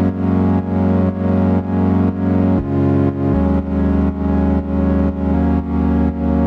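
Synth pad from Ableton's Operator FM synthesizer playing solo: sustained chords with the volume pulsing about twice a second. The chord changes a little over two and a half seconds in and again just past three seconds.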